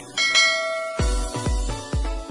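A short bell-chime sound effect rings out as the subscribe animation's notification bell is clicked. About halfway through, electronic music with a heavy kick-drum beat, about two beats a second, comes in.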